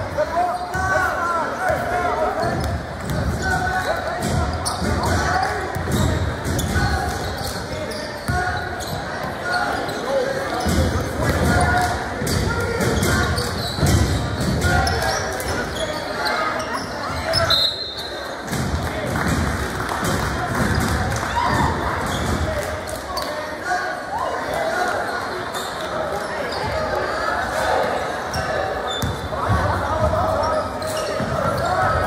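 Basketball being dribbled on a hardwood gym court, its bounces repeating throughout under indistinct voices of players and spectators, all echoing in a large gym. A brief high tone sounds about halfway through.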